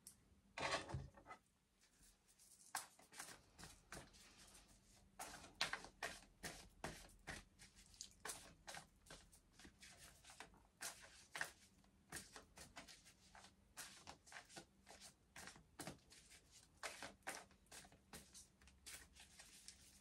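Tarot deck shuffled by hand in an overhand shuffle: quiet, irregular soft card slaps and flicks, a few a second, over a faint steady hum.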